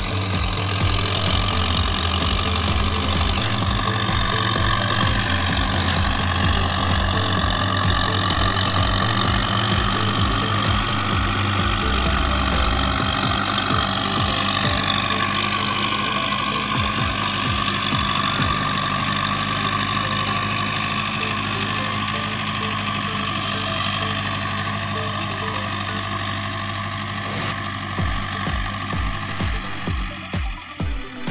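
Tractor engine running steadily under load while pulling a land-levelling scraper, mixed with background music whose low notes change in steps and whose beat comes in near the end.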